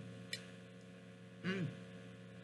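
A woman's appreciative 'mmm' while eating, one short hum near the end that rises and falls in pitch. About a third of a second in there is a short sharp click. A steady low electrical hum runs underneath.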